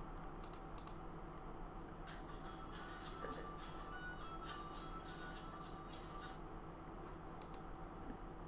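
Faint computer clicks and keyboard tapping over a steady low electrical hum, with a few sharp clicks about half a second in and again near the end.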